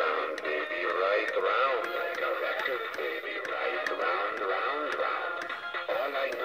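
Gemmy animated looping bat toy's small built-in speaker playing its tinny electronic song, a wavering melody over a ticking beat about twice a second.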